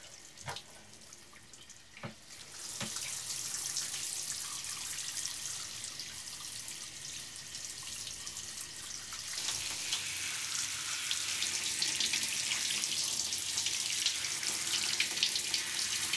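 Water running and splashing onto a person's shoulders and hair in a tiled bathtub. It starts about two and a half seconds in, after a few soft knocks, and grows louder about halfway through.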